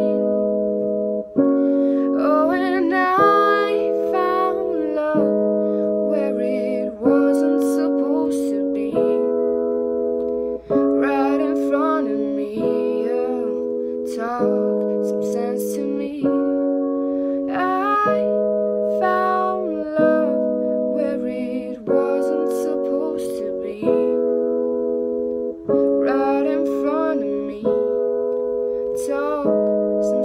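A woman singing a slow song over sustained keyboard chords that change about every two seconds.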